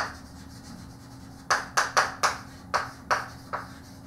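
Chalk writing on a blackboard: one sharp tap at the start, then from about halfway through a quick run of short, sharp chalk strokes and taps, about nine in two seconds, as words are written.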